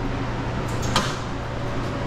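Maytag Commercial front-loading washer's door lock clicking shut once, about a second in, just after the wash cycle is started, over a steady low hum.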